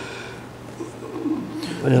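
A pause in a man's talk, filled with a faint, low, wavering voiced sound of hesitation. Full speech resumes near the end.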